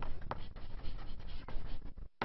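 Chalk scratching across a blackboard as words are written, with a few sharp taps of the chalk.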